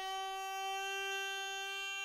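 Hurdy-gurdy melody string, a newly fitted violin A string, sounded by the cranked wheel: one steady held note as the string is tuned up.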